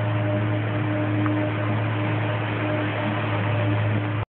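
A steady low hum with a constant hiss over it, unchanging throughout.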